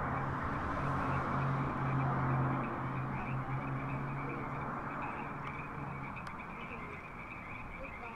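Movie trailer soundtrack playing through a tinny drive-in theater speaker: muffled and hissy, with no clear words, over a low steady hum that fades out about six seconds in.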